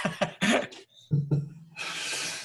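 Men laughing in short, broken bursts, ending in a long breathy sound.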